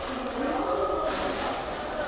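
Indistinct background voices of several people talking in a room, with no clear words.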